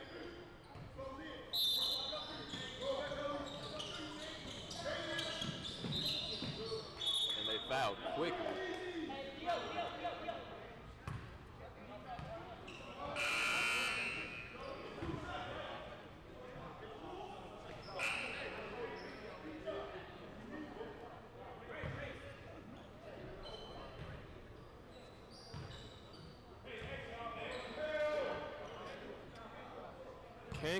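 Basketball being dribbled and bouncing on a hardwood gym floor, with scattered knocks, short high squeaks and players and spectators calling out, all echoing in a large hall. A brief high tone, about a second long, stands out near the middle.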